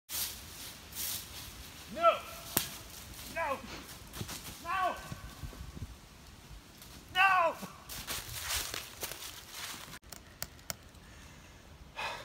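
Leaf rake scraping through dry fallen leaves in repeated strokes, broken by four short shouted cries like "Oh!", the loudest about two seconds and seven seconds in. The last two seconds are quieter, with a few sharp clicks.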